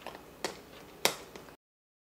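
A screwdriver clicking against the screws of a steel tap plate on a tap shoe: two sharp metallic clicks about half a second apart, with a few fainter ticks, as the toe tap screws are worked out. The sound cuts off abruptly near the end.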